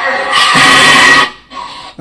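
Loud music with voices mixed in, from the soundtrack of a gym video clip, cutting off suddenly just over a second in.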